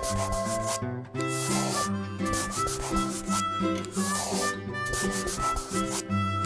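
Scratchy marker-scribbling sound effect, a rubbing noise that comes and goes about once a second as a colour is filled in, over a light background music track with held notes.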